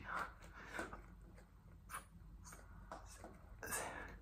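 Faint breathing of a man straining through a set of push-ups: short breaths puffed out every half second to a second, with a louder exhale near the end.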